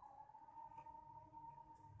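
Near silence: faint room tone with a faint steady whine.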